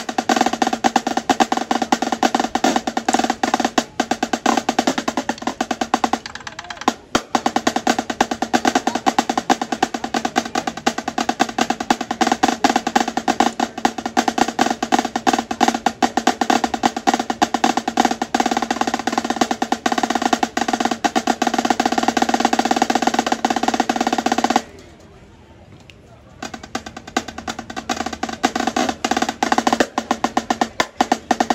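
Marching snare drum played solo with sticks: fast, dense runs of strokes, broken by a brief gap about six seconds in and a pause of over a second about 25 seconds in before the playing resumes.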